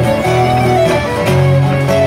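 Fiddle and guitar playing a dance tune together: the fiddle carries the melody over strummed guitar accompaniment.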